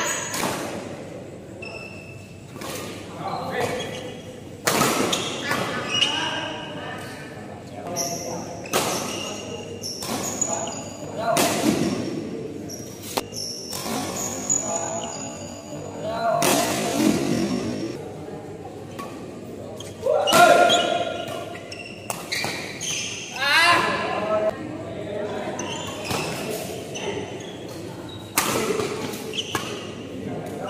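Badminton doubles rallies in an echoing hall: rackets strike the shuttlecock again and again in sharp cracks, mixed with players' shouts and calls. The loudest shouts come around the 20- and 24-second marks.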